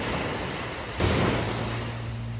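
Sea waves breaking on the beach, with a fresh wave surging in about a second in.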